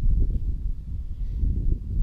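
Wind buffeting the microphone: an uneven low rumble with no clear tone in it.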